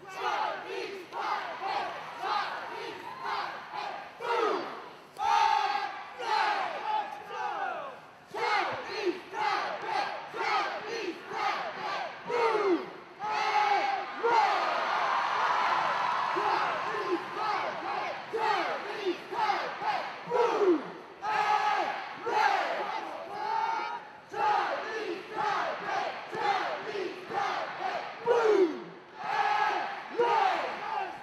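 A cheer squad shouting a rhythmic chant in unison, some of it through megaphones, over crowd noise. The crowd noise swells into a stretch of cheering about halfway through.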